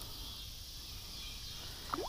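Faint, steady high-pitched insect chorus of the summer evening, with a low rumble underneath.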